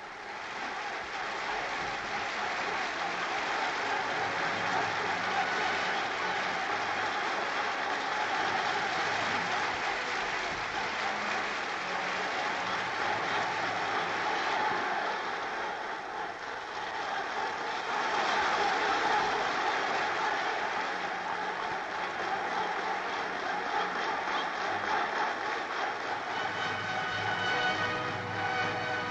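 A large crowd in a hall applauding and cheering, in a long steady ovation that dips briefly about halfway through and then swells again.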